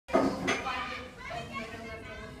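Indistinct children's voices chattering, loudest right at the start.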